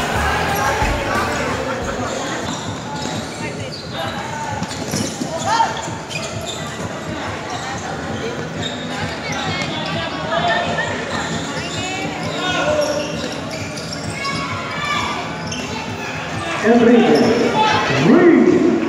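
Players and spectators calling out and chattering in a large hall during a futsal game, with thuds of the ball being kicked and bouncing on the court floor. The voices get louder near the end.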